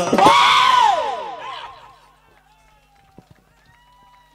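The band's music breaks off and a loud, drawn-out shout through the sound system rises and then falls in pitch, echoing and dying away over about two seconds. After that only a faint hum remains, with a few light knocks about three seconds in.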